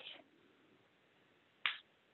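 A single short, sharp click about three-quarters of the way through, against near silence.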